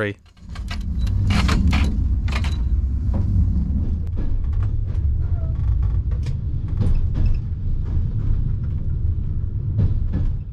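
Night-train sleeper carriage running along the line, heard from inside the compartment: a steady low rumble with scattered sharp rattles and clicks, most of them in the first few seconds.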